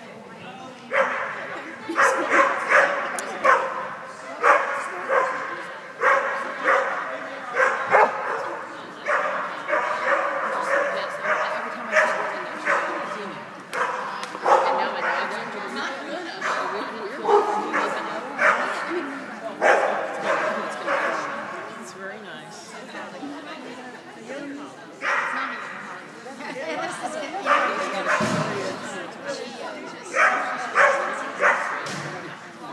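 A dog barking over and over in runs of sharp barks, with short pauses between the runs.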